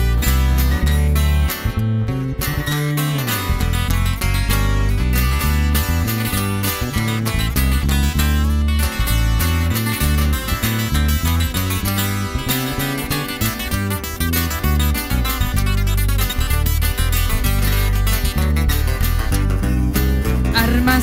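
Instrumental break of a corrido played by acoustic guitars and electric bass, the guitars plucking and strumming over a steady walking bass line, with no singing.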